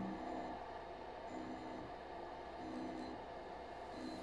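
Faint whine of the pick-and-place head's stepper motor turning the nozzle in steps during nozzle calibration: short pitched bursts about half a second long, roughly every second and a bit, over a low steady hum.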